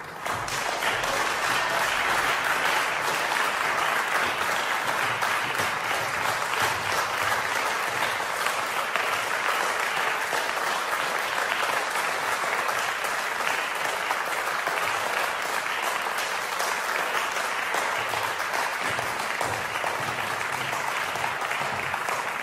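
Audience applause that breaks out suddenly and carries on steadily.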